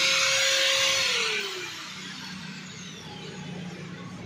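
Handheld electric angle grinder running, then switched off about a second in. Its whine falls in pitch as the disc spins down.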